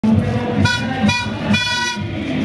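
Three blasts of a horn at one steady pitch, about half a second apart, the third held longest.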